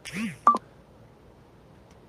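A short, loud electronic beep about half a second in, just after a brief sound that rises and falls in pitch. Faint room noise follows.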